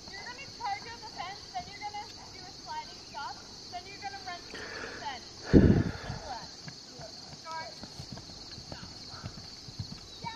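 Hoofbeats of a loose horse trotting and cantering on grass, with one loud low thump about five and a half seconds in.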